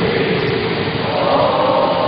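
A steady wash of many indistinct voices blended together over a constant hiss, with no single voice standing out.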